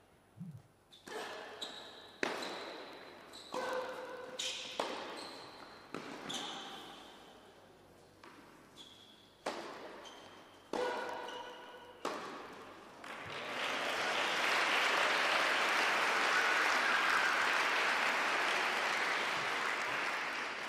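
Tennis rally in an indoor hall: about a dozen sharp racket strikes and ball bounces, each ringing briefly in the hall. The rally ends and crowd applause rises about 13 seconds in, fading near the end.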